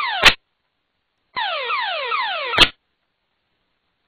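An aircraft emergency locator transmitter's wailing alarm: a falling sweep repeated several times a second, set off by the crash. It comes over the radio in two short transmissions, each cut off with a squelch click, with dead air between and after.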